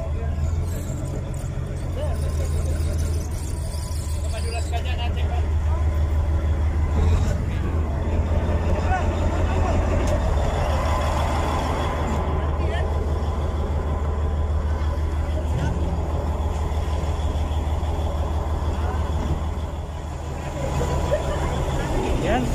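Small motorboat's engine running with a steady low drone, with voices in the background.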